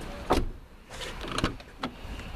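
A car's rear door being opened by hand: a sharp latch clunk about a third of a second in, then two lighter clicks and knocks as the door swings out.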